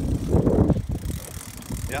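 Fishing reel clicking rapidly while a hooked walleye is fought, with wind buffeting the microphone; the clicking is loudest about half a second in.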